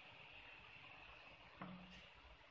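Near silence: room tone with a faint steady high-pitched whine. About one and a half seconds in there is a small click, then a brief low hum.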